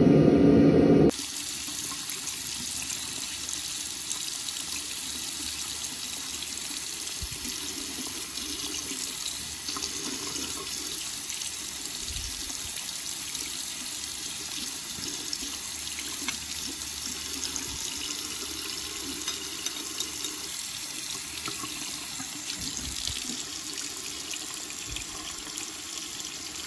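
A louder sound cuts off about a second in. Then a tap runs steadily into a sink, splashing over a hand and a stainless-steel bottle opener as the leftover laser marking coating is rinsed and rubbed off.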